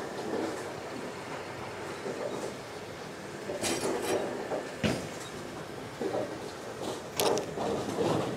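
Reactive-resin bowling ball (Roto Grip Exotic Gem) rolling down a wooden lane, a steady rumble, then a cluster of knocks as it strikes the pins about four to five seconds in, the sharpest near five seconds.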